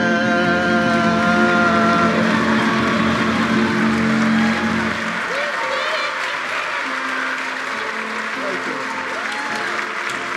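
Live band of keyboard, bass and electric guitar, with a singer, ending a song on a long held note and chord that dies away about five seconds in. A large audience applauds throughout, with a few voices calling out over the clapping in the second half.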